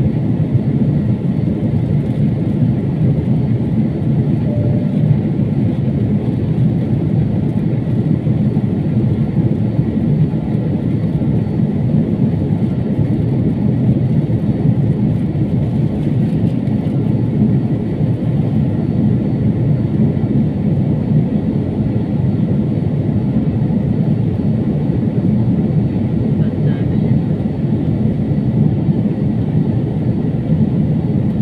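Steady low rumble of an airliner's cabin in flight: engine and airflow noise heard from inside the fuselage, unchanging in level.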